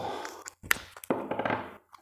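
Electrical tape being pulled off the roll and wrapped around a laptop battery, a rasping peel with handling noise, broken by a sharp tap about two-thirds of a second in.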